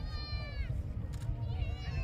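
A high-pitched human voice calls out: one drawn-out cry that drops in pitch at its end, then a second wavering call that rises near the end. A steady low rumble runs underneath.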